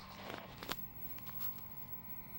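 Low-level background: a faint steady hum with a few soft clicks in the first second.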